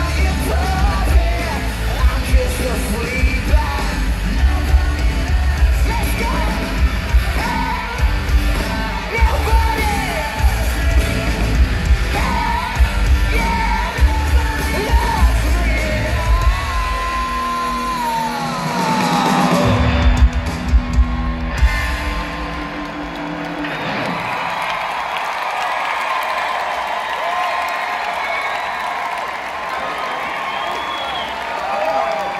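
A live rock band plays loud in an arena, with heavy drums and bass under shouted vocals. The music stops about two-thirds of the way through and gives way to a quieter crowd noise of cheering.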